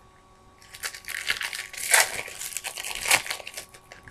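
Foil trading-card pack wrapper being handled and crinkled: a dense run of crackles starting about a second in and stopping just before the end.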